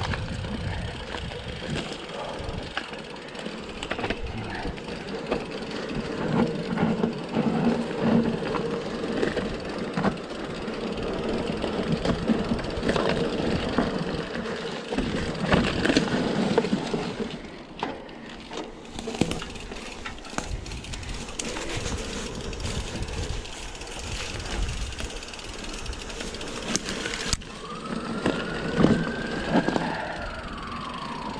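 Mountain bike riding over a dirt forest trail: the tyres run on the dirt and the bike rattles with frequent clicks and knocks over the rough ground. Near the end a whine rises and then falls.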